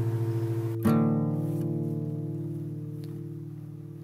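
Guitar chord from a song, struck about a second in and left to ring and slowly fade, with no singing over it.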